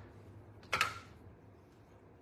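One short, sharp handling noise a little under a second in, from craft tools or paper on the work table. Otherwise only faint room tone.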